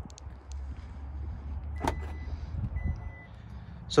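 A 2020 Hyundai Santa Fe's power tailgate opening: a sharp latch click a little under two seconds in, then the gate's motor running under two short steady warning beeps.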